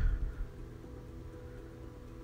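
A brief low thump at the start, then faint steady background music.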